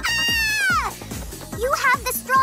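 A cartoon character's high-pitched screaming cry, held for nearly a second before its pitch falls away, over background music with a steady beat.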